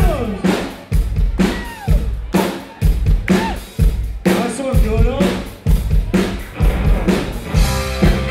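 Live rock band playing with a strong drum-kit beat, kick and snare hits about twice a second, under bass and short sliding pitched sounds.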